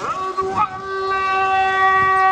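Muezzin's call to prayer: a single sung voice slides up into one long, steady held note.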